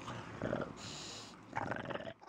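English bulldog lying on its back making short throaty noises: one burst about half a second in and a longer one near the end, with a breathy hiss between them.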